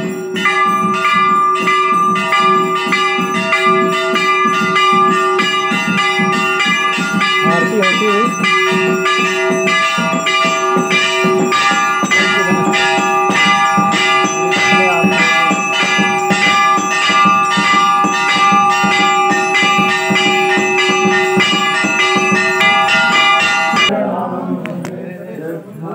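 Hindu temple bells rung continuously for the evening aarti: rapid, even strokes with several bell tones ringing on over one another.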